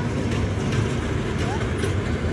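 Busy outdoor play-area ambience: a steady low rumble with faint children's voices and short high calls over it.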